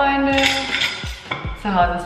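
A young woman's voice over background music, with one sound drawn out for nearly a second at the start and low thuds in the music.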